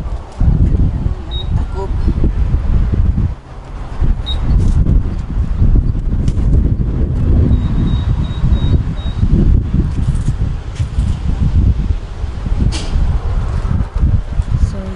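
Wind buffeting the camera's microphone outdoors: a loud, gusty low rumble that rises and falls unevenly, with two brief dips.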